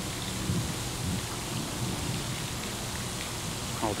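A steady hiss of background noise with a few faint, indistinct low sounds in it. A man's voice begins right at the end.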